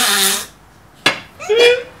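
Two men laughing in three short bursts; the loudest comes about a second and a half in.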